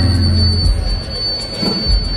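Music over a hall's sound system, with heavy bass in the first second and a steady high-pitched whine held over it.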